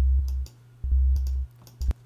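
Ultrabeat drum synth kick drum voice played twice, just under a second apart: each hit is a deep, short sub-bass tone with a click at its attack, the oscillator being frequency-modulated. A sharp mouse click near the end.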